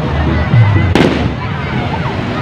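A single sharp firework bang about a second in, over crowd voices and music.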